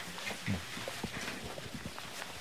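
Scattered light knocks and shuffling from several people moving about and handling handheld microphones, with a soft low thump about half a second in.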